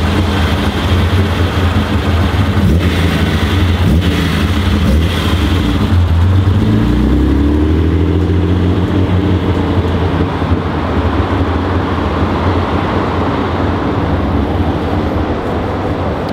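Classic Nissan Skyline 'Kenmeri' engine running, with a throaty intake note that sounds like individual throttle bodies. The revs rise about seven seconds in as the car pulls away, then settle to a steady run.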